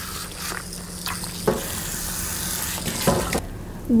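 Water from a hand-held sink spray hose running through a wet dog's coat and splashing into the sink as it is rinsed, with a couple of brief knocks; the water stops shortly before the end.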